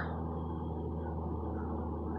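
Lockheed C-130 Hercules four-engine turboprop passing overhead, heard as a steady low drone.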